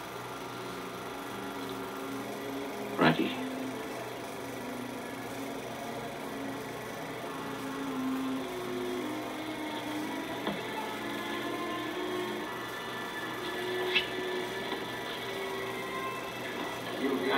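Slow, held notes of the film's music score, dull and without treble, played through a 16mm film projector's sound, over the projector's steady running hum. There is a sharp click about three seconds in and a smaller one near the end.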